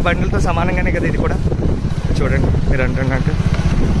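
Steady low rumble of wind and road noise from riding along a road, with a person's voice over it near the start and again about two to three seconds in.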